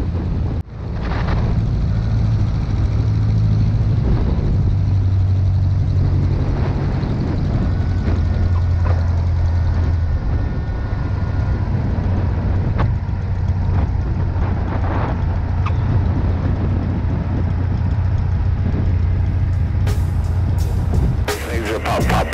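Cessna 150's four-cylinder Continental O-200 engine running at low power through the landing and rollout, a steady drone heard from inside the cabin. It cuts out briefly about a second in.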